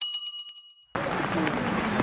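A bell-like chime sound effect rings out with several clear tones and fades away over the first second. It then cuts to steady outdoor background noise from a crowd on the move.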